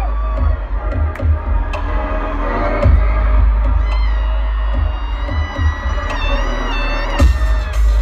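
Loud electronic show music with deep bass, played over an arena sound system, with the crowd cheering underneath.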